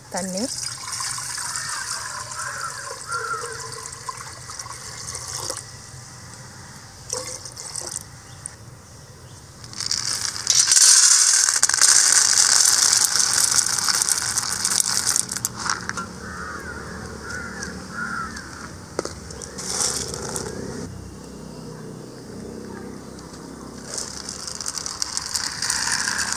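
Water poured from a steel pot into an aluminium pressure cooker, then dried mochai (field) beans poured by hand into a steel bowl with a loud rattle near the middle, the loudest part. Near the end, water runs onto the beans in the bowl.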